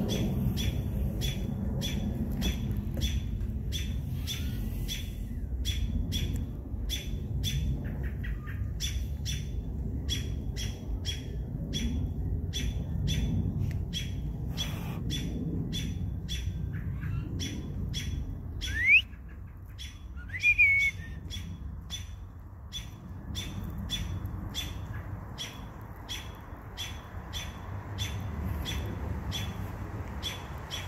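American robins' sharp alarm calls, repeated over and over at about one and a half a second: robins mobbing a perched owl. About two-thirds of the way through come two louder calls, the first a quick upward sweep. A steady low rumble runs underneath.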